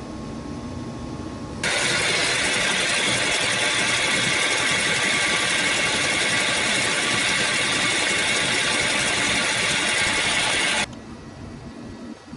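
Metal lathe running with its chuck spinning: a steady, loud machine noise that starts abruptly about a second and a half in and cuts off abruptly near the end.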